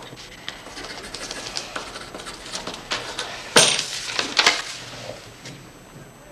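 A run of small clicks, knocks and clinks of handling at a card table, loudest about three and a half seconds in, with another cluster just after four seconds.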